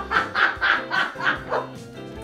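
A child laughing in a run of short, quick bursts, about four a second, fading out near the end, over light background music.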